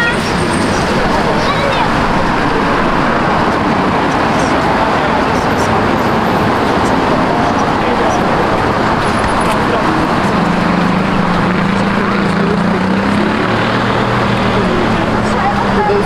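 Steady city road-traffic noise with voices of people nearby. A vehicle engine hum swells for a few seconds from about ten seconds in.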